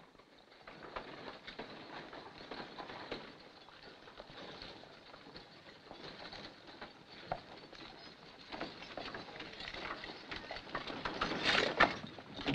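Hoofbeats of a four-horse team and the rattle of the horse-drawn wagon it pulls on a dirt road. The sound grows louder as the team comes closer and is loudest near the end.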